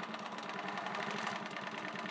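Grace Qnique 15R longarm quilting machine stitching steadily along the edge of a quilt, its needle running in a rapid, even rhythm.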